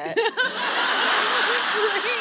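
An audience laughing together, swelling up about half a second in, with a woman's short chuckles close to the microphone on top.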